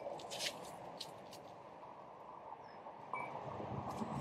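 Quiet garden ambience: a faint steady background hiss with a few soft ticks near the start and two brief, faint bird chirps in the second half.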